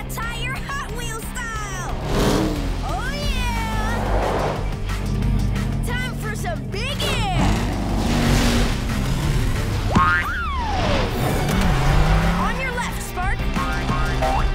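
Cartoon background music under a car-racing action scene, with several sliding-pitch sound effects and short vocal exclamations over it.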